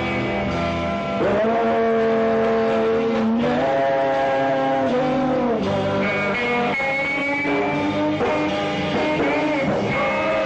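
Rock band playing live, electric guitars to the fore, with long held melody notes that slide from one pitch to the next.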